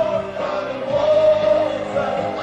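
Live rock band playing while a singer holds long, high notes with vibrato.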